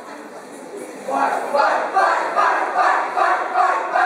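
A choral speaking group of school students declaiming together in loud unison, coming in strongly about a second in after a quieter start.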